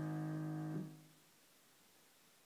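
The last chord of a piano piece held and then released just under a second in, cutting off and fading quickly to near silence.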